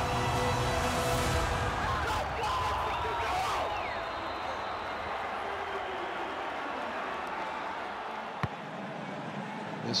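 Stadium crowd cheering after a touchdown, with shouts in the first few seconds. The noise slowly dies down, and a single sharp click comes near the end.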